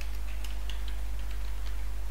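Computer keyboard keystrokes: about eight irregular, separate taps as a line of code is typed. A steady low hum runs underneath.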